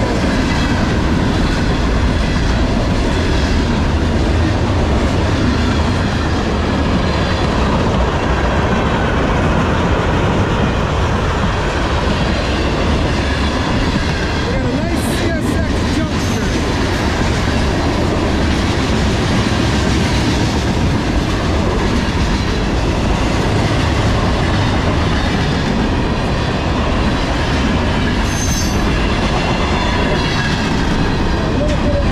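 CSX manifest freight train's tank cars, covered hoppers and gondolas rolling past at track speed: a steady, loud rumble of steel wheels on rail, with a brief cluster of sharp clicks about halfway through.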